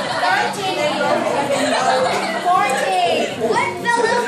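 A group of children and adults talking over one another in a lively, overlapping chatter.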